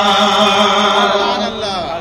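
A man's voice through a PA system, chanting a line of an Urdu devotional couplet in a long held melodic note that wavers and trails off near the end, with the hall's echo after it.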